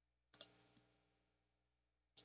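Near silence broken by two faint, quick computer mouse clicks a little after the start.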